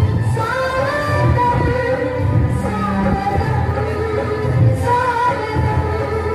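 Odia welcome song playing for a dance: a female voice sings a melody over a steady low drum beat.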